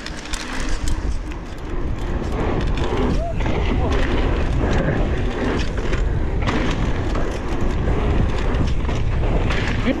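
Wind buffeting a helmet-mounted camera microphone as a mountain bike rolls fast down a dirt trail, with tyre crunch and small rattles from the bike. It grows louder over the first couple of seconds as speed picks up, then stays steady.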